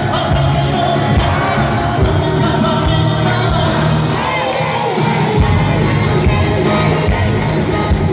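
Live pop-rock band playing with a singer, recorded from the crowd at an arena concert, with audience cheering mixed in. The bass and drums drop out for about a second before the middle, then come back in.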